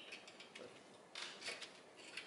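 Quiet metal handling at an exhaust joint: a few light clicks and a brief scrape as a new exhaust gasket is worked into place at the catalytic converter flange.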